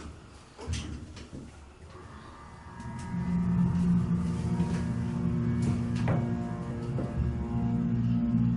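Hydraulic elevator pump motor starting up about three seconds in and then running with a steady multi-toned hum as the car rises; the riders think it sounds like a Canton pump unit. A few faint knocks come before the pump starts.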